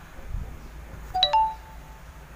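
A short two-note electronic chime about a second in, a lower note followed by a higher one that rings on briefly.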